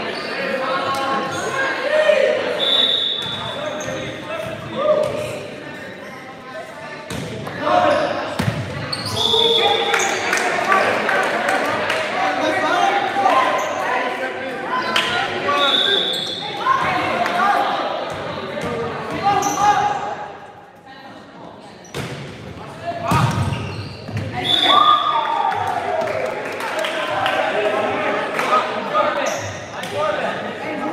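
A volleyball being struck and bouncing on a hardwood gym floor, with sharp smacks through play, under indistinct players' and spectators' voices echoing in a large gym. Short high-pitched tones sound four times.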